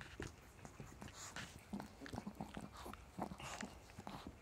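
Dog licking a person's bare arm: quick, irregular wet licks and tongue smacks, several a second.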